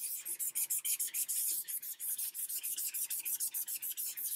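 Folded paper towel dampened with Goo Gone adhesive remover rubbed quickly back and forth over sticker residue on a paperback cover. It makes a scratchy swishing in even strokes, about six a second.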